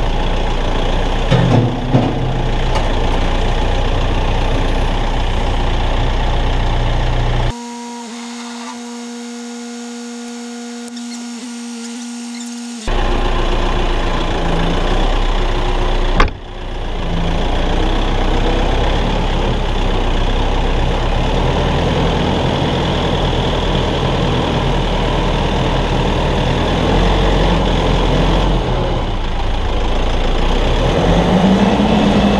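Kioti RX7320 utility tractor's diesel engine running as the tractor drives, heard from the operator's seat. For a few seconds partway through it gives way to a quieter steady hum, and a sharp click comes at about 16 seconds.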